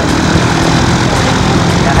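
Single-engine high-wing Cessna's piston engine and propeller running at low taxi power as the plane rolls past, a steady low drone.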